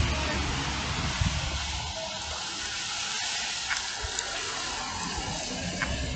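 Street traffic noise: a steady hiss, with a low engine rumble that fades out about two seconds in.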